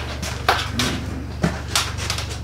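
A few short knocks and clunks, about three, from a stainless steel work table being moved, over a steady low hum.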